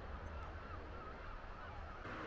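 Faint calls of distant birds, a few short wavering cries, over a low steady rumble.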